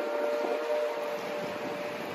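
A pause in acoustic guitar playing: after a sharply stopped chord, one or two notes ring on faintly and fade out over the steady background noise of a city street.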